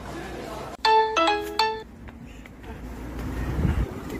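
A short, loud electronic chime of three or four notes, close to the microphone, about a second in: a high note, two lower notes, then the high note again. Low rumbling noise then builds toward the end, as of wind on the microphone.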